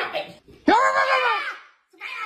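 A startled woman's voice: a short cry, then one long wailing scream of about a second that rises and falls in pitch, the reaction to being jump-scared.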